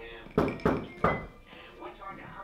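Three loud knocks on a door within about a second, a caller knocking.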